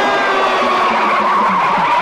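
Lorry driving past with a loud, sustained high squeal, several tones sliding slowly down in pitch.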